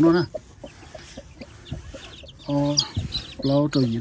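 Young chicks peeping in short high notes while the mother hen gives a low cluck, with a man's voice briefly at the start and near the end.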